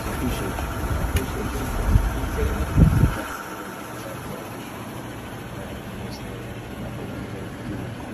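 Faint, muffled voices over a steady low rumble of outdoor background noise, louder for the first three seconds and then dropping to a quieter hiss.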